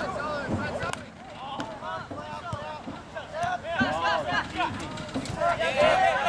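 Players' voices calling out across an outdoor soccer pitch, stronger near the end, with a sharp knock about a second in.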